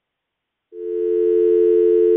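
Telephone dial tone: a loud, steady two-note hum that swells in under a second in and holds without a break, the line back at dial tone after the other party has hung up.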